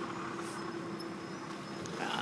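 Street traffic: a steady engine hum over a background of road noise.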